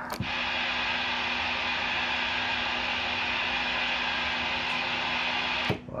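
CX-3300HP radio's receiver hissing steadily through its speaker on an empty channel, with no station answering the call; a sharp click sounds just after the start and another shortly before the end.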